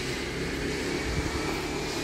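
Angle grinder cutting something, heard as a steady mechanical whine over the noise of the street.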